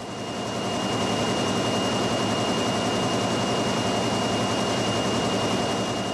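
Can-end production machinery running: a power press and its conveyor line making a steady, dense mechanical din with a thin high whine over it, fading up over the first second.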